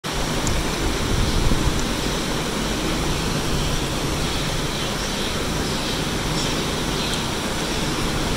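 A steady, even rushing noise with a few faint ticks.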